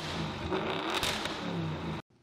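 A car engine revving, its pitch rising and falling.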